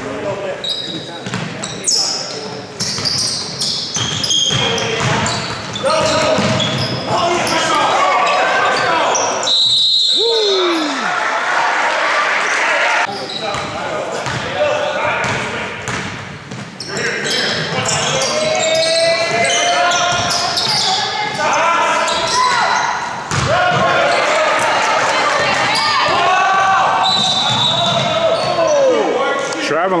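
Basketball dribbling on a hardwood gym floor during play, with players' and spectators' voices and shouts echoing in the gym, and a few short high squeaks.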